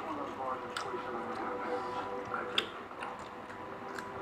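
A person chewing a mouthful of rice and vegetables eaten by hand, with a few short sharp mouth clicks and smacks.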